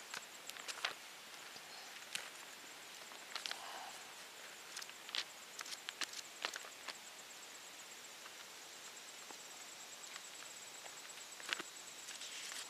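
Thin Bible pages being leafed through by hand: a scattering of soft paper rustles and flicks, picked up close by a clip-on microphone.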